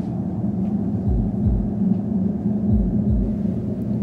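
A low, dark soundtrack drone with deep double thuds that recur about every second and a half.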